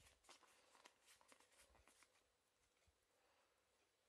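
Near silence with faint clicks and slides of Pokémon trading cards being handled and shuffled from the back of the stack to the front, dying away about halfway.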